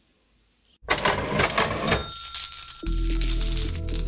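A cash-register sound effect: a rattle of coins about a second in, then a short bell ding. Music with a steady low bass starts about three seconds in.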